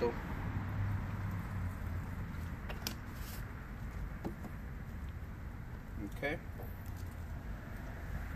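Super Clean degreaser poured from its gallon jug through a funnel into a plastic spray bottle, then the jug set down with a light knock about three seconds in, over a steady low outdoor rumble.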